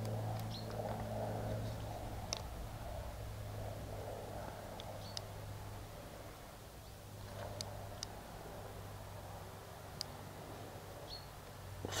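Quiet outdoor background with a low steady hum, a few faint scattered clicks and a couple of brief high chirps.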